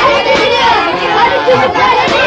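Many children's voices chattering and calling out all at once, overlapping into a continuous babble.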